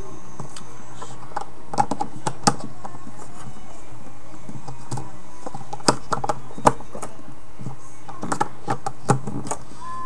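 Irregular small plastic clicks and taps of a Huawei Ideos smartphone being handled as its battery is worked into the back, over a steady background hum.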